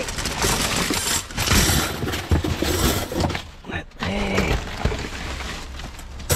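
Plastic wrapping film and bubble wrap crackling and rustling as gloved hands dig through packaging waste, in a dense, irregular run of crinkles and small knocks.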